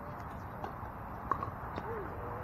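A few scattered sharp pops of pickleball paddles striking a hollow plastic ball, the loudest a little past halfway, with faint voices.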